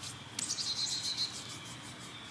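Birds chirping in the background: a few short high chirps about half a second in, then a thin, high, steady trill.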